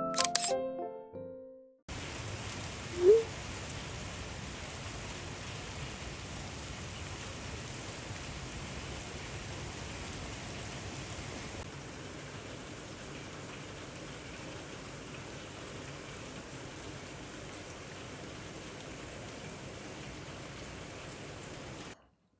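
Steady rain falling, an even hiss that starts about two seconds in after a short stretch of music ends. Just after three seconds there is a single brief, loud rising chirp.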